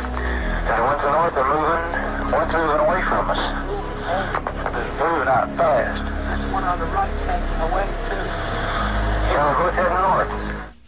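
Men's voices on an old, noisy field audio tape recording, calling out objects in the sky, with a steady low rumble and hiss beneath them.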